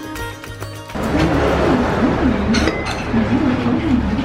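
China teacups and saucers clinking, with a couple of sharp clinks near the middle. Background music in the first second gives way to a voice in the room.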